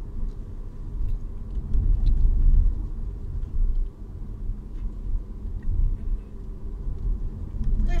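Low, uneven rumble inside a car's cabin, with a few faint clicks over it.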